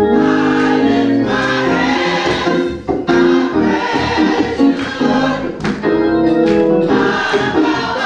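Church choir singing a gospel song in full voice over organ accompaniment.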